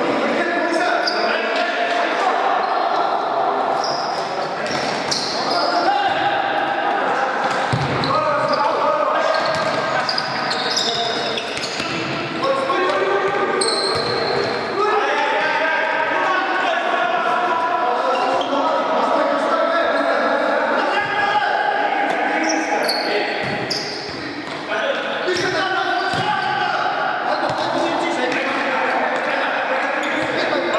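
Futsal ball being kicked and thudding on a hard sports-hall floor, with players calling out to each other, all echoing in a large gym.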